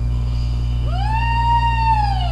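A woman's long, high wailing cry in prayer travail: it rises about a second in, holds, then starts to fall away. A steady low hum runs underneath.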